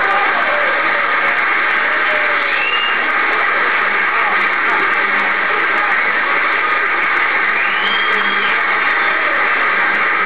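Waterfall: a steady rush of falling water.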